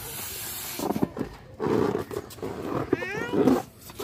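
A rubber balloon being blown up by mouth: several rough puffs of breath forced into it, with a short squeak about three seconds in.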